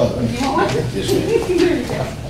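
Low, indistinct voices: a few murmured words or chuckles that the recogniser did not write down.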